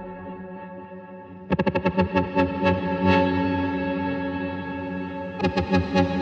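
Electronic music in a DJ mix: a held chord fades down, then about a second and a half in a quick run of sharp notes comes in, heavily processed with echo. A second fast run of notes comes near the end.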